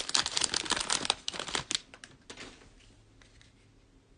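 Plastic trading-card pack wrapper crinkling in the hands as it is torn open and pulled off the cards: a dense run of crackles that dies away about two seconds in.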